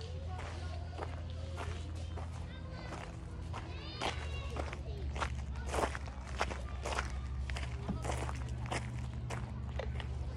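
Footsteps on a gravel path strewn with dry leaves, roughly a step every half second, over a steady low hum.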